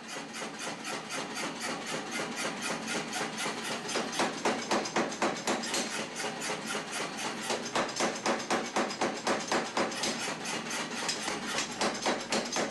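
Hammer striking hot steel at a forge in a fast, even rhythm of about four to five blows a second, growing louder over the first few seconds: steel being forge-welded and drawn out.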